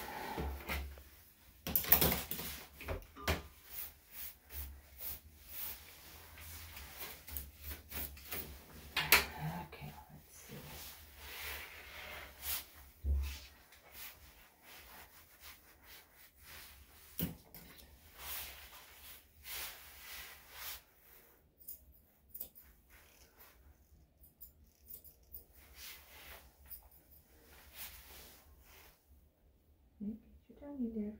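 A hand brush sweeping clipped dog hair off a grooming table: many short brushing strokes and light knocks, denser in the first half. Sparser, fainter scissor snips near the end as the scissors trim around the dog's face.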